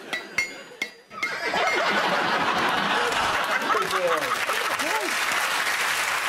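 Three sharp clacks about half a second apart in the first second, an imitation of a desk toy's clacky noise, then a studio audience breaks into laughter and applause.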